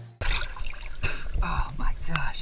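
Water sloshing, trickling and splashing close to the microphone at the waterline of a half-sunken boat wreck. It starts abruptly just after the beginning.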